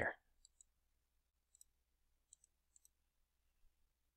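Faint computer mouse clicks, a few short ticks spread over about three seconds, some in quick pairs, against near silence.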